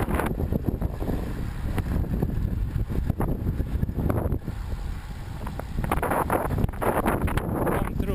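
Wind buffeting the microphone of a camera riding on a road bike descending at speed: a continuous low rumble, with stronger surges about three seconds in and again from about six seconds.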